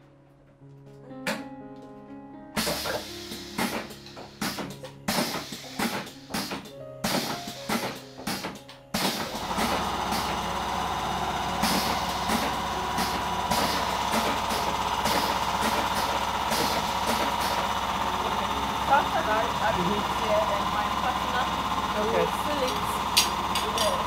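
Background music with guitar and a beat for about the first nine seconds. It then cuts abruptly to a coconut-water filling machine running with a steady hum and a held whining tone.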